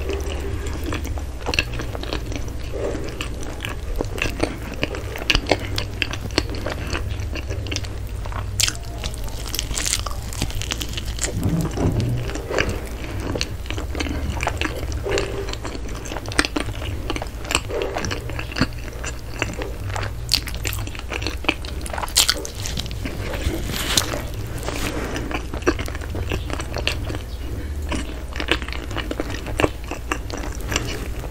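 Close-miked chewing and biting of soft bread, with irregular wet mouth clicks and small crackles of the crust, over a steady low hum.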